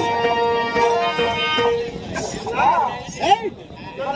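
Folk-theatre music: a steady held note with many overtones from an accompanying instrument, fading out a little under halfway, then a voice singing or declaiming short phrases that swoop up and down in pitch.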